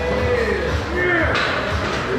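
Background music with a singing voice over a steady bass line.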